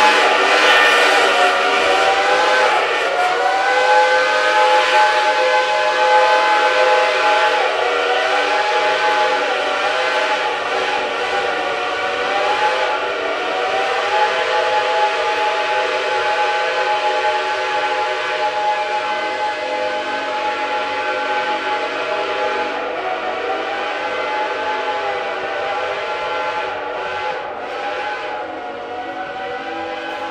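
Several steam locomotive whistles blowing together in one long chord, their pitches bending up and down every few seconds, slowly fading toward the end.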